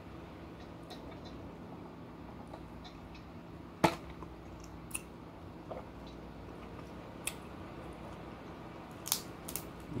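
Snow crab leg shells being cracked and snapped apart by hand: a few short, sharp cracks spread over several seconds, the loudest about four seconds in, over a steady low room hum.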